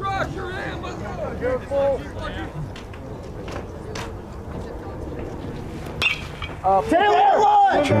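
Outdoor ballpark murmur of crowd and dugout voices, then a single sharp crack of a bat hitting the pitch about six seconds in, popping the ball straight up in the air. Raised voices follow.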